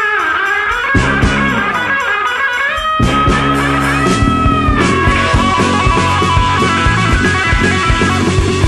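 Instrumental passage of a psychedelic blues-rock song by a guitar, bass and drums trio. Electric guitar plays sustained, bending notes over bass and drums. The full band hits in harder about three seconds in.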